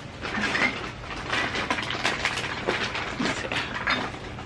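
Irregular clicks, rattles and rustles of objects being handled close to the microphone.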